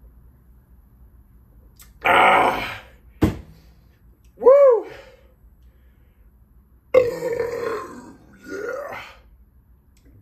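A man belching and gasping after chugging 24 ounces of beer. The first loud belch or gasp comes about two seconds in and the last, longest one about seven seconds in. Between them there is a single sharp knock as the glass mug is set down on the bar.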